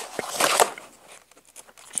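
Brief rustle of a cookbook's paper page being handled, in the first second.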